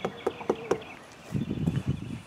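Light clicks and taps of a hand fiddling with plastic parts and hoses in a car's engine bay, about four in the first second, then a short rougher scuffle of handling noise near the end.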